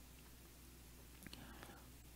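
Near silence: room tone with a low hum, and a few faint ticks a little past a second in.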